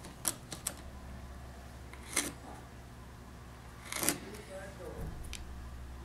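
Sharp clicks of a small blade nicking the edge of a thin sheet-wax feather to cut in imperfections: a few quick light ones at the start, then two louder ones about two seconds apart.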